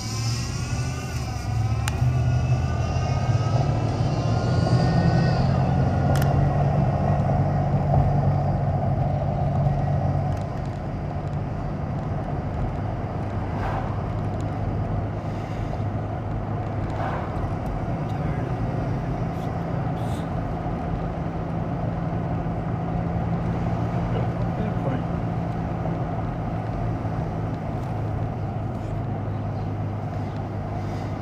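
Car engine heard from inside the cabin as the car accelerates from walking pace, with a whine rising in pitch over the first couple of seconds. About ten seconds in the engine eases off and settles into a steady cruise with even road noise.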